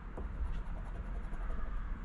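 A poker chip scraping the silver latex coating off a scratch-off lottery ticket, a faint irregular scratching.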